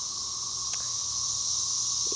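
Steady, high-pitched insect chorus, with a single click under a second in.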